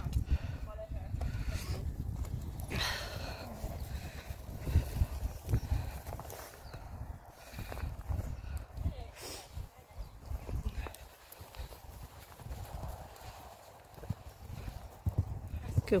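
Hoofbeats of a horse, a retrained ex-racehorse, trotting and cantering over a stone-chip arena surface: a run of dull, uneven thuds.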